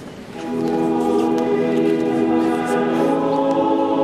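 Church choir singing a slow hymn, a new phrase entering about half a second in with long held chords.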